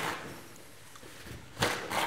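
Salt tipped from a small bowl into a pot of boiling pasta water, heard as one short, sharp burst of noise about one and a half seconds in, over a quiet steady background.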